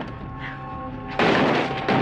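A front door being forced open: a loud crash a little over a second in, lasting under a second, with steady background music underneath.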